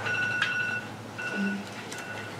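Electronic timer beeping: a long two-pitch beep, then shorter beeps at intervals. It is the kind of alarm that signals a speaker's allotted time is up.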